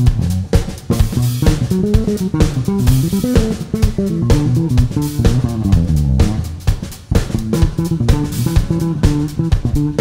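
Live funk-rock band music: an electric bass guitar plays a busy, stepping line over a drum kit with kick and cymbals, with a short sung phrase about two seconds in.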